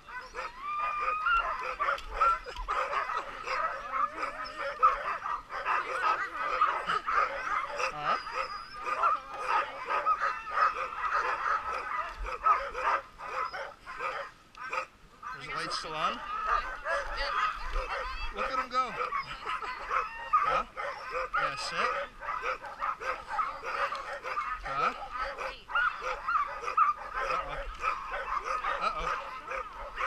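A yard full of harnessed sled dogs (huskies) barking and yipping all at once, an unbroken chorus with a brief lull about halfway through.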